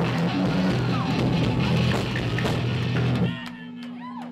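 Live heavy metal band playing distorted electric guitar and drums, stopping abruptly a little over three seconds in. A steady low amplifier hum is left ringing after it.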